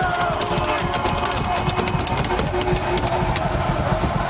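Music: the national anthem being sung, with held sung notes.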